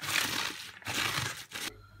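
Chopped cabbage crunching and crackling as it is squeezed and rubbed by hand with salt, in a few strokes that die away near the end.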